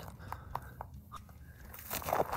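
Faint footsteps crunching on dry, gravelly desert ground, a few soft steps.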